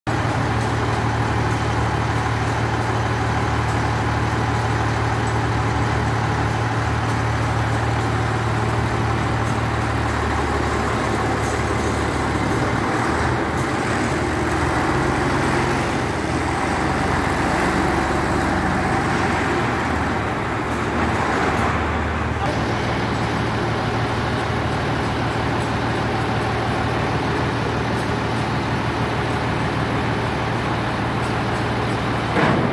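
Diesel engine of the Tatra 162 prototype dump truck running steadily, with a low, even hum. Its note changes for a stretch in the middle, then settles back to the same steady run.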